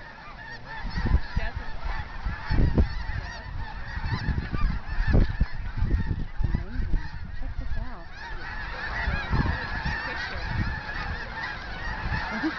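A large flock of cranes and geese calling in a dense, overlapping chorus as they fly overhead, the calls thickening past the middle. Repeated low thumps on the microphone are the loudest sounds, about a second in and again near three and five seconds.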